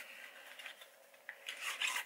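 Small cardboard box of an eyeliner palette being opened by hand: soft rubbing and scraping of the packaging, with louder rustling near the end.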